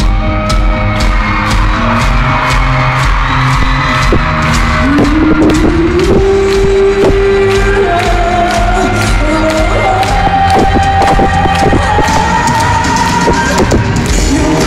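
Live rock band playing loud over the arena PA, heard from among the audience: a steady drum beat under guitars, with long held notes, a lower one about a third of the way in and a higher, slightly rising one later.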